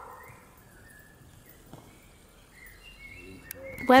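Quiet outdoor garden ambience with small birds chirping faintly in short, thin calls.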